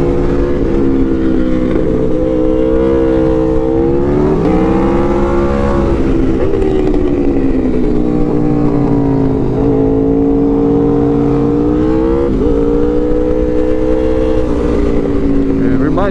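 Aprilia RSV4 Factory's V4 engine with a Yoshimura exhaust, running under riding load. Its pitch rises and falls gently through the curves and jumps up quickly twice, about four seconds in and again about twelve seconds in. Wind rush sounds on the microphone underneath.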